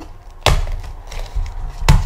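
Two sharp knocks from a cardboard card box being handled and opened, one about half a second in and a louder one near the end.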